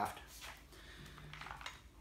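Near silence with faint handling noise: a few light clicks as a straight trimmer shaft tube is fed into a Stihl FS 45 powerhead's clamp housing.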